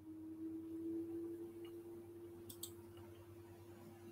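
Computer mouse clicking quietly: a quick double click about two and a half seconds in, with a faint single click before it, over a faint steady hum.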